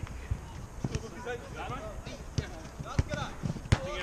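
Football being kicked on an outdoor artificial pitch: several sharp thuds of ball strikes among players' repeated shouts, the loudest thud near the end as the goalkeeper dives for it.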